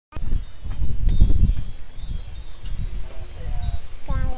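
Loud, uneven low rumbling noise on the microphone, starting abruptly after a cut, with faint high tinkling scattered through it and a faint voice near the end.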